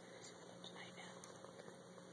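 Near silence: quiet church room tone with a steady low hum and faint whispered speech.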